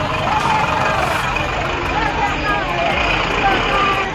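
The engine of a bus-sized police van running, with several people talking at once around it.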